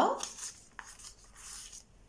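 Faint paper rustling as a euro banknote is handled and slipped into a paper envelope in a ring binder, with a small tick just under a second in.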